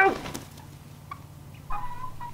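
A hen clucking as she is held: a short, even-pitched call near the end, with a few faint scuffles before it.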